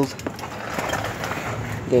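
Steady background noise with a few faint clicks.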